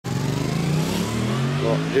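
A motor vehicle's engine running close by, a steady hum that sinks slowly in pitch as it slows or moves off.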